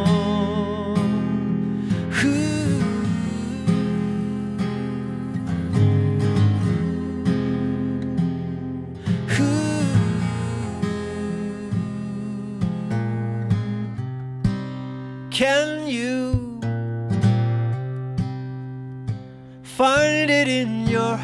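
Live solo acoustic guitar with a man's voice singing a few held, wordless-sounding phrases over it.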